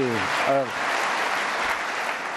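Large audience applauding, an even clapping that starts to thin toward the end, with a man's brief hesitant "äh" over it near the start.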